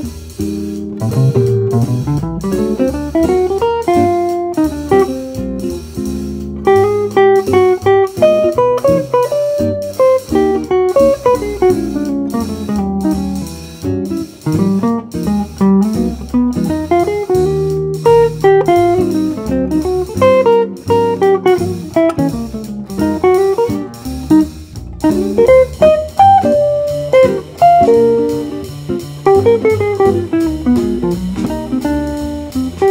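Archtop electric jazz guitar improvising fast single-note lines at about 170 bpm over a backing track with bass, a swing solo whose phrases are deliberately started and ended on unexpected beats and offbeats.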